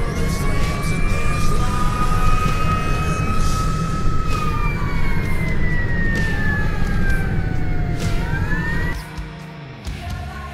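Fire engine siren wailing, its pitch slowly rising and falling, heard from inside the cab over a heavy engine and road rumble. Both cut off about a second before the end.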